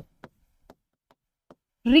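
A marker writing on a whiteboard: four or five faint taps and clicks as strokes are drawn. Speech resumes near the end.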